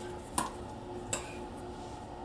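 A metal spoon clinks twice against a glass bowl, two short sharp knocks under a second apart, as baking soda is stirred into sour cream.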